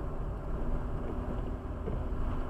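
Car driving at about 58 km/h, a steady low rumble of engine and tyres on the road heard from inside the cabin.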